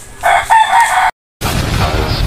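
A rooster crowing once, loud and about a second long, cut off abruptly by an edit; electronic outro music starts just after the cut.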